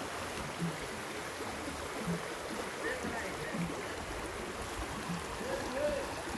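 Floodwater running steadily, with a soft low thud recurring about every second and a half.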